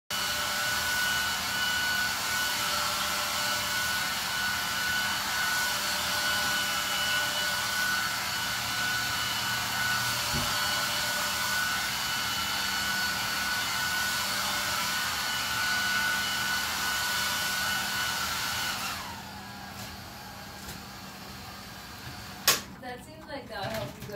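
A steady motor-driven whir, fan-like and with a thin high whine in it, which cuts off suddenly about nineteen seconds in. A single sharp click comes a few seconds later.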